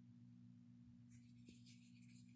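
Near silence: a faint, steady low hum throughout, with a faint rustle in the second half.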